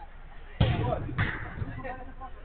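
A football struck hard twice, sharp thuds a little over half a second apart, followed by players' shouts.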